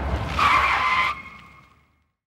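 A short tyre screech, well under a second long, over a fading low rumble at the tail of the intro music. It dies away quickly about halfway through.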